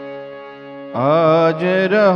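A harmonium holds a steady chord. About a second in, a man's voice comes in loudly, singing a long drawn-out line of a devotional kirtan with a wavering, ornamented pitch over the instrument.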